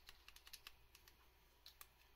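Faint, scattered light clicks and taps of small plastic and metal suspension-fork parts being handled: black plastic spacer tubes pushed together over a metal rod and coil spring. A quick run of clicks comes in the first second, and one more near the end.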